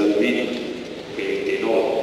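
Speech only: a man's voice speaking two short phrases.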